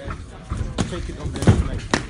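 Punches and kicks landing in a kickboxing bout: four sharp slaps and thuds of gloves and shins striking, the loudest about one and a half seconds in.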